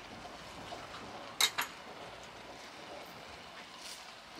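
Mushrooms simmering in their soaking liquid in a cast iron skillet over a wood-fired rocket stove, a steady bubbling hiss. Two sharp clicks about a second and a half in.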